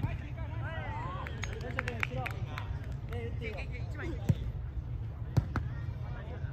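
Players calling out on a soccer pitch. A ball is struck sharply about four seconds in, then twice more in quick succession near the end, over a steady low rumble.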